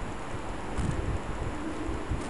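Wind rumbling and buffeting on the microphone, with light rustling and a brief brighter hiss about a second in.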